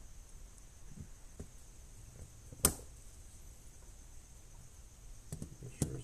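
Snap-ring pliers fitting a small steel C-clip onto a rocker arm trunnion: a few faint metal clicks, one sharp snap about two and a half seconds in, and two more clicks near the end.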